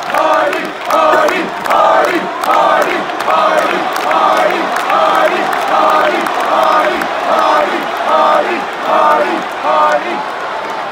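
Large arena crowd chanting in unison, the same short chant repeating in a steady rhythm.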